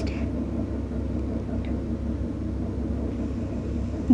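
Steady low background hum in the room, with a faint brief scratch of a marker on the whiteboard about one and a half seconds in.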